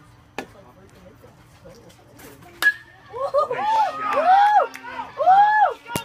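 A bat striking a pitched baseball with a sharp, ringing ping about two and a half seconds in, then spectators yelling loudly in long rising-and-falling shouts.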